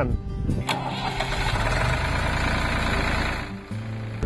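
Farm tractor engine starting: a click, then a few seconds of cranking and catching, then a steady low idle hum from about three and a half seconds in.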